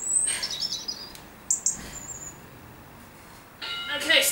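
Small birds chirping: several short, high chirps and calls, with a longer call near the end.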